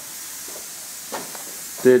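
Steady background hiss, with a faint brief sound about a second in; a man's voice begins near the end.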